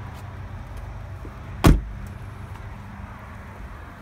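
A vehicle door on a Ford Expedition Max shut once with a single heavy thump just under two seconds in, over a steady low background rumble.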